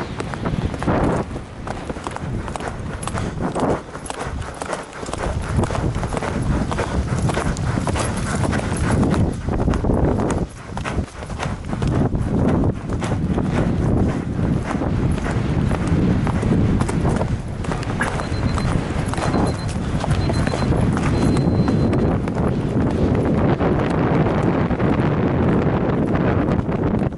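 Eventing mare galloping across grass, her hoofbeats a continuous rhythm, heard from the saddle through a helmet-mounted camera's microphone.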